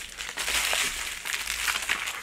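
Plastic bubble-wrap pouch crinkling and crackling in the hands as a camera lens is worked out of it, a dense, continuous run of crackles.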